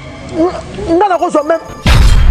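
A voice sounds in a few short, pitched syllables. Just before the end, a loud burst of music with heavy bass cuts in suddenly.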